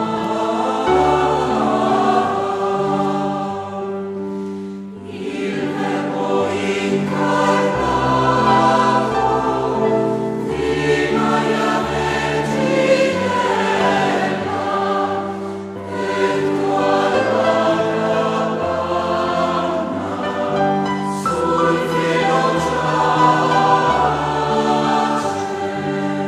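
Background music: a choir singing sustained chords over an instrumental accompaniment with a moving bass line.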